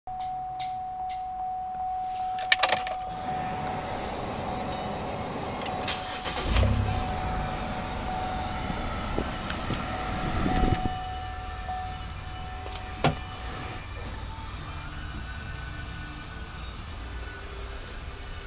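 Minivan's key-in-ignition warning chime sounding in quick repeated dings, with a few clicks. About six and a half seconds in the engine starts, and it idles steadily after that.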